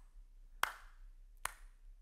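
Two single hand claps, evenly spaced a little under a second apart, beating out a slow rhythm.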